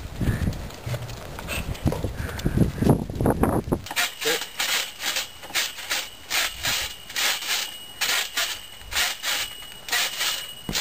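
A low rumbling, thudding noise for the first few seconds. It gives way to a trampoline being jumped on, its springs and frame creaking and squeaking in an even rhythm of about two to three strokes a second.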